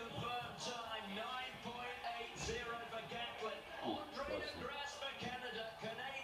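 Television broadcast sound playing in a room: voices, with some music underneath.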